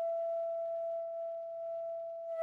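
Solo flute holding one long note, steady in pitch and nearly pure in tone, slowly getting softer.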